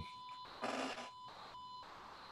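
Faint electrical whine on a computer microphone's audio line: thin, steady high tones that cut in and out, with a short burst of hiss a little over half a second in.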